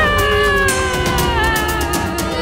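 A long wailing tone that slides slowly down in pitch, over background music with a steady low bass.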